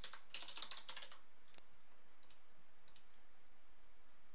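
Typing on a computer keyboard: a quick run of keystrokes in the first second, then a few single clicks.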